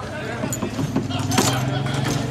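Foosball in play: the ball is struck by plastic players and the steel rods and springs rattle in the wooden table, with several sharp knocks, the loudest about one and a half seconds in.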